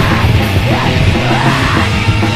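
Loud, dense heavy rock from a record: a full band playing hard, with yelled vocals over it.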